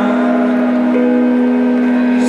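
A live rock band holding one long, steady drone note with its overtones, with no drums in it, between sung passages of a song.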